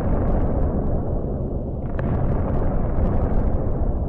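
Explosion sound effect for nuclear missile strikes: a heavy, continuous rumbling blast that grows hissier about two seconds in.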